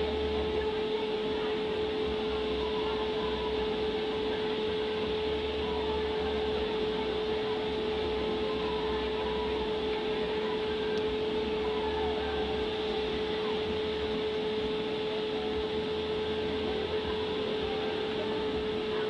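Steady mechanical hum with one constant mid-pitched tone and a low throb underneath, as from a small fan or blower motor running continuously.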